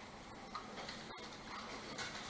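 Quiet room tone during a pause in speech, with a few faint ticks. The sound cuts out completely for an instant a little past halfway.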